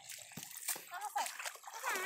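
Bare feet splashing as they wade through shallow muddy water, with faint voices.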